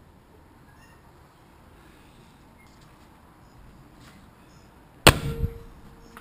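Faint background noise, then the door of a 1971 Ford Escort Mk1 shut with one loud thunk about five seconds in, followed by a brief ring.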